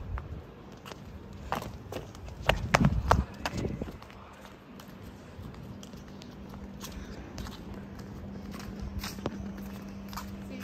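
Footsteps on a paved walkway, heard as scattered sharp clicks, with a louder spell of low rumbling noise about two and a half to three and a half seconds in. A faint steady low hum runs through the second half.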